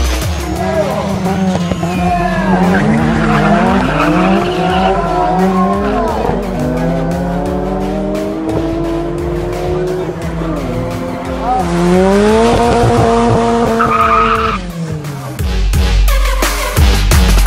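Ford Sierra Cosworth's turbocharged four-cylinder engine revving hard on a drag strip, its pitch climbing and dropping several times as it accelerates through the gears, with tyre squeal.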